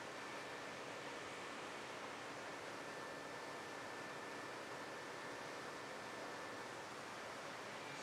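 Steady, even background hiss with a faint thin whine held throughout, and no distinct events.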